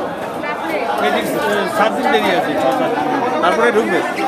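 Several men talking over one another: crowd chatter in a busy market hall.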